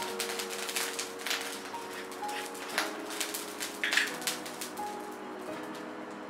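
A little oil crackling with irregular small clicks as it heats in a nonstick wok on a lit gas burner, over soft background music holding steady notes that change twice.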